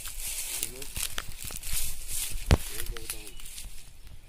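Dry bamboo leaf litter crackling and rustling as a person shifts and steps on it, with many small irregular clicks and one sharp snap about two and a half seconds in.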